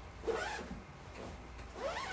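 Zipper on a quilted fabric-and-mesh packing cube being drawn open.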